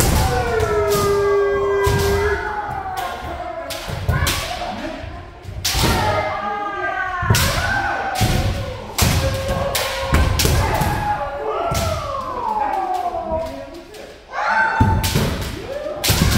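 Kendo practice: bamboo shinai cracking against armour and feet stamping on the wooden floor, many strikes throughout, over long, drawn-out kiai shouts from several fencers that mostly fall in pitch.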